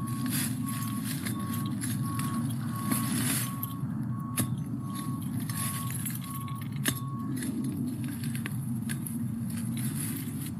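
Twist tiller tines being dug and twisted into soil under dry leaf litter, with crunching, rustling clicks as the liriope clump is worked loose. Beneath it is a steady low background rumble, and a faint high beep repeating a little under twice a second, which stops about seven seconds in.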